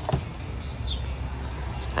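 Outdoor background with a steady low hum and a single short, high bird chirp about a second in.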